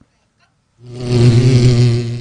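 A cartoon bee's buzzing sound effect fades in about a second in and holds as a low, steady buzz.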